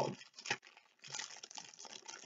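Plastic packaging crinkling as it is handled, in irregular rustles from about a second in, after a single small tap about half a second in.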